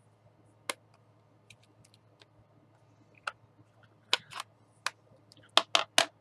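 Scattered sharp clicks and taps from handling plastic stamping supplies: a stamp ink pad's plastic case and a clear acrylic stamp block. A few single clicks come first, then louder clicks in quick pairs about four seconds in and again near the end.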